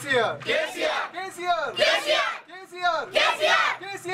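A group of men, women and children chanting together in unison, in short rhythmic shouted phrases with brief gaps between them.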